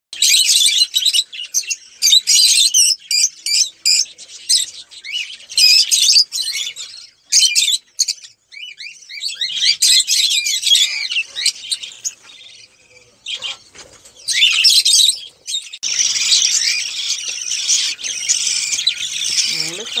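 Budgerigars chirping and chattering in quick warbling bursts, becoming a dense continuous chatter of several birds from about three-quarters of the way in.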